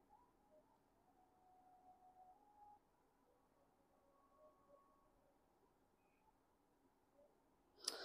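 Near silence: faint room tone, with a short sharp sound right at the very end.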